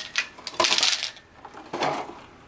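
Small red ball ornaments clattering against one another and the bowl as they are poured from a container into a clear bowl. There is a quick run of clinks through the first second, then a short pause and another brief clatter near the end.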